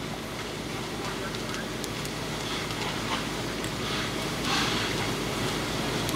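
Steady rushing noise of a burning building and fire hose streams spraying into it, with scattered faint crackles and a low steady drone from a running engine.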